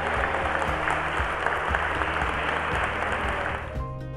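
A congregation applauding, over background music; the applause cuts off suddenly near the end, leaving the music.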